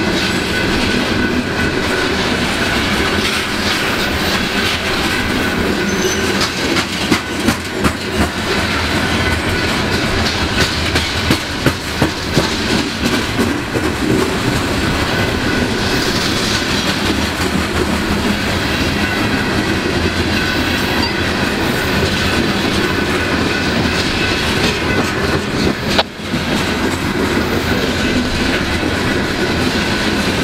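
Coal train's steel freight cars rolling past at speed: a steady rumble of wheels on rail, with clickety-clack of wheel sets crossing rail joints, most distinct in the first half.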